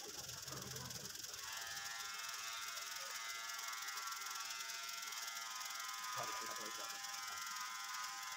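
Electric hair trimmer switched on about a second and a half in, then running with a steady hum.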